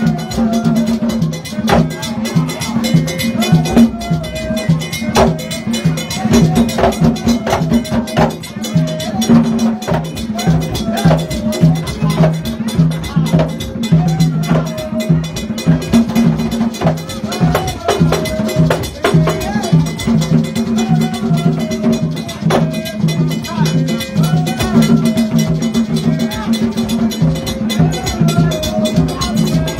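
Live drumming for a Vodou Petro ceremony: a steady, repeating percussion rhythm, with voices singing over it.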